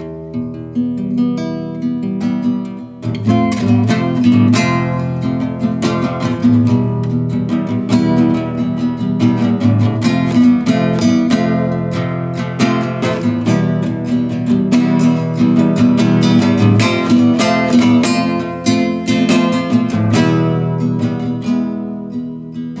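Acoustic guitar playing an instrumental break between verses of a song, lighter at first, then strummed fuller and louder from about three seconds in.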